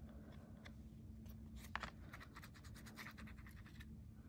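Faint scratching and light clicks of fingers handling and pressing a thin embossed metal tape panel against a card, with one slightly sharper click a little under two seconds in. A faint steady hum sits underneath.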